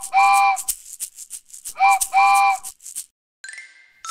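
Cartoon steam-train sound effect: a chord whistle toots twice, short then long each time, over a quick shaker-like chuffing rhythm. A short ringing tone follows near the end.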